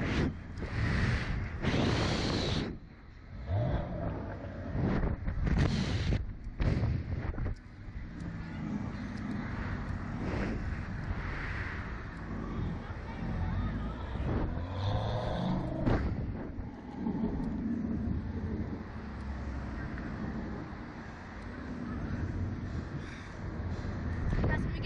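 Wind rushing over the onboard camera's microphone as the Slingshot reverse-bungee capsule swings and bounces, with several strong gusts in the first several seconds, then settling into a steadier, lower rush.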